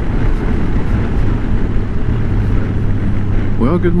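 Honda Gold Wing flat-six engine running steadily at cruising speed, with a low, even hum under road and wind noise rushing over the microphone.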